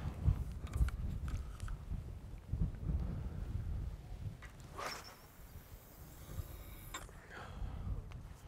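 Low wind rumble on the microphone. About five seconds in comes the swish of a carp rod casting a spod, followed by a faint hiss of line running off the reel and a short click.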